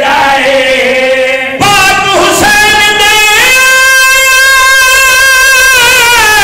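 A man's voice, amplified through a microphone, singing a drawn-out line of a devotional elegy recitation in Punjabi. The phrase breaks off about one and a half seconds in, glides into a new phrase, then settles on one long held note through the second half.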